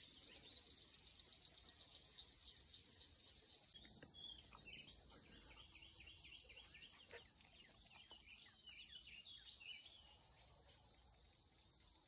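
Faint outdoor nature sounds: crickets trilling steadily and high-pitched, with a bird chirping a run of short notes from about four seconds in until about ten seconds.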